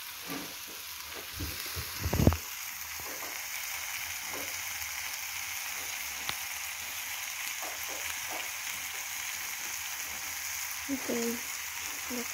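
Pieces of meat frying in oil in a black skillet over a wood fire, with a steady sizzle throughout. A few loud knocks come about two seconds in.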